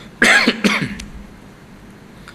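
A man clearing his throat close to a microphone, in two short bursts one after the other.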